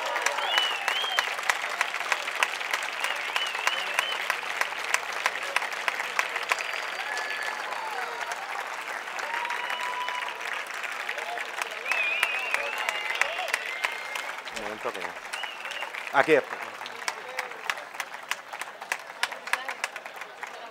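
Audience applauding, a dense, steady clapping that gradually thins out toward the end.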